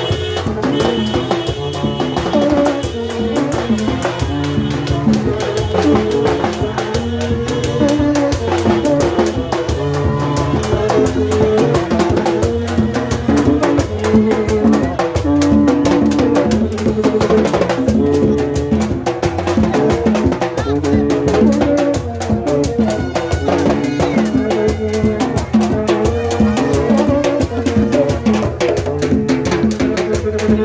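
Live rara band playing on the march: tin kònèt horns and bamboo vaksen trumpets blow a repeating figure of short held notes over hand drums and shaken and scraped percussion.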